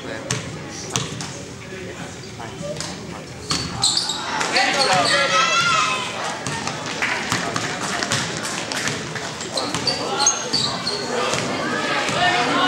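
Basketball bouncing on a gym floor during play, with short sneaker squeaks and spectators' voices. The voices grow louder, with shouting, from about four seconds in.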